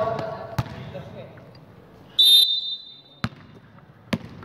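A referee's whistle gives a short, shrill blast about two seconds in, ringing on briefly in the gym. A basketball bounces on the hardwood court once before it and once after it.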